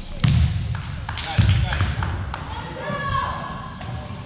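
A basketball bouncing a few times on a hardwood gym floor, the loudest bounces about a quarter second and about a second and a half in. Voices call out, echoing in the large gym.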